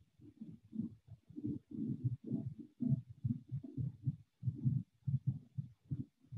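Muffled, indistinct talking: low voices with the words not made out, coming in short syllable-like bursts.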